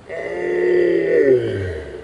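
A man's long, drawn-out groan of pain after a fall onto his wrist. It swells and then fades, lasting over a second and a half.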